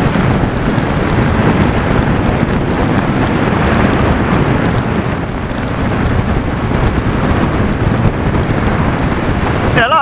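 Loud, steady wind rush buffeting a helmet-mounted microphone at riding speed, with the Suzuki SV650's V-twin engine running underneath.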